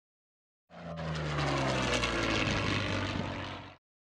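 Propeller-driven piston aircraft passing by, its engine note falling in pitch as it goes past. It comes in sharply under a second in and cuts off suddenly just before the end.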